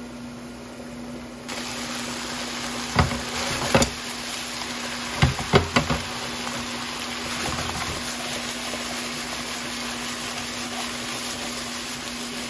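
Chicken pieces, potatoes and carrots sizzling in a wok, the sizzle coming up suddenly about a second and a half in. Several sharp knocks of the lid and utensil on the pan fall between about the third and sixth second, over a steady low hum.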